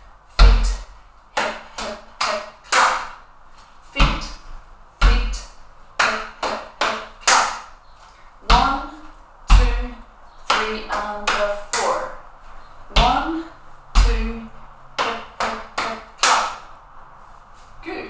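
Body percussion routine: two stamps of trainers on a wooden floor about a second apart, then three quick hand slaps on the hips and a clap, the pattern repeating about four times at a steady tempo.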